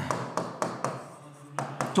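A series of sharp taps on a hard surface: about four in the first second, a short gap, then two or three more near the end.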